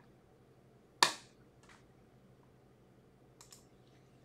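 A sharp knock about a second in, followed by a fainter one, and two light clicks close together near the end, over quiet room tone.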